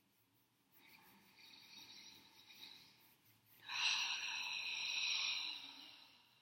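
A person breathing slowly and deeply: one long breath starting about a second in, then a louder one from about three and a half seconds that fades away near the end.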